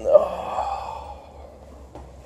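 A single drawn-out sigh, loud at the start and fading away over about a second.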